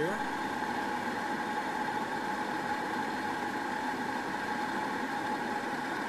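Small helicopter running on the ground after landing, its engine and rotor giving a steady drone with a few held tones.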